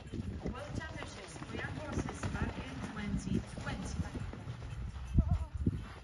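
Hoofbeats of a cross-country event horse galloping out of a water jump onto turf, as dull irregular thuds that are loudest about five seconds in as it passes close. A distant voice talks underneath.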